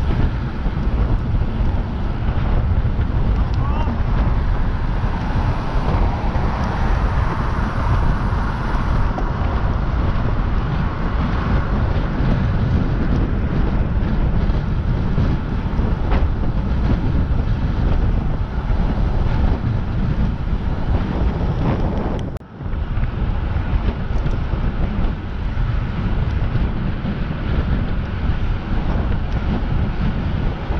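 Wind buffeting the microphone of a camera on a road bike ridden at speed, with road noise beneath. It drops out briefly about two-thirds of the way through.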